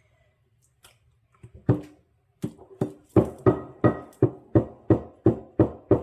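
A plastic spoon knocking against a glass mixing bowl in a steady rhythm of about three strikes a second. Each knock has a brief glassy ring at the same pitch. The knocking starts sparse and becomes regular a few seconds in.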